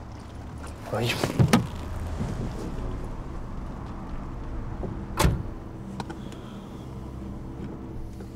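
Sounds inside a stationary car: clicks and knocks about a second in, then a car door shutting with a single thump about five seconds in. A low steady hum from the idling engine runs underneath.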